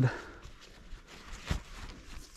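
Quiet outdoor background with faint low rumble and a single short click about a second and a half in.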